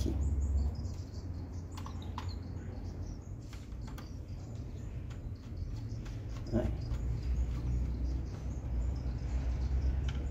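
Small clicks and scrapes of a screwdriver tightening a wire into the screw terminal of a solar charge controller, over a steady low rumble.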